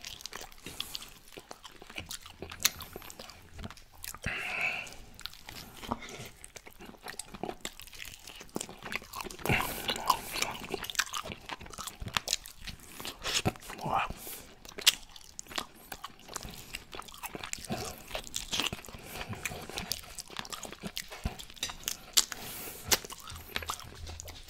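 Close-miked open-mouth chewing and lip smacking as baked chicken is bitten and gnawed off the bone, full of irregular wet clicks and smacks.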